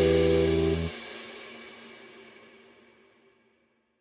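The final held chord of a Greek electronic remix, a sustained bass note with chord tones above it, cuts off about a second in and leaves an echoing tail that fades out.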